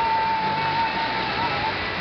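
Steady hiss of water jets spraying and splashing in a shallow splash pool. A single long high note is held over it and stops near the end.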